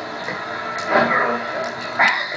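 Indistinct voices in a room, with a brief voiced sound about a second in, over the hiss of an old videotape recording.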